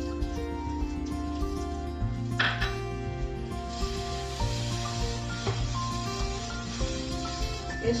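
Background music with a steady bass line, over green beans sizzling in oil in a nonstick frying pan and being stirred with a wooden spatula. The sizzle grows louder about halfway through.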